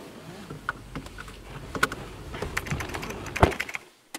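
Irregular light clicks and taps, a few per second, over a faint low background rumble.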